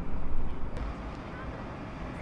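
Low rumble of a vehicle close by that eases off about a second in, leaving steady street noise with faint distant voices.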